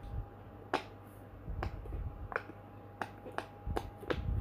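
Bubbles of a silicone pop-it fidget toy being pushed in by fingers, popping with about five sharp, irregularly spaced clicks, along with a few soft low thumps from handling the toy.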